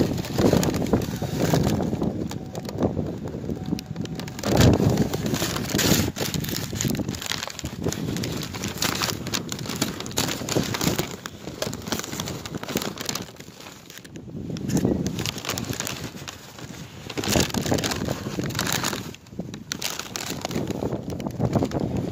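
Rustling, crackling handling noise on a phone microphone as the phone is moved about and brushes against clothing, with wind on the microphone.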